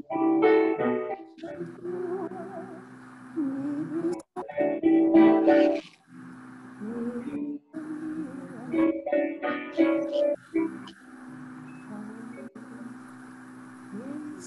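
A hymn sung by a woman's voice over keyboard accompaniment: sung phrases with brief breaks, over steady held chords.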